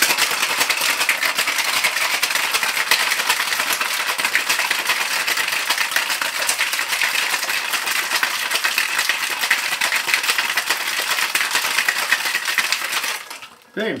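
Ice cubes rattling hard inside a copper cocktail shaker tin shaken vigorously by hand, a dense, loud, continuous clatter that stops about a second before the end.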